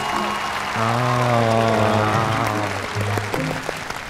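Studio audience applause over a short music cue of held, sustained notes; the music fades out near the end.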